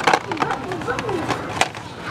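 Plastic blister-pack toy cards clicking and clattering against each other and the metal peg hooks as they are flipped through by hand, in a string of sharp clicks. Faint voices can be heard behind.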